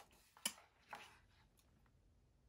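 Near silence with two faint, short clicks, about half a second and a second in: a picture book's page being turned.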